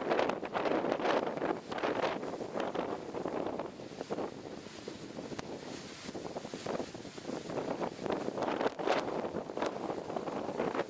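Gusty thunderstorm wind buffeting the camera microphone in irregular surges. It eases for a few seconds in the middle and picks up again near the end.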